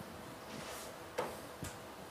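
Quiet writing sounds: a soft stroke, then two light sharp taps of a writing implement about half a second apart, over faint room hum.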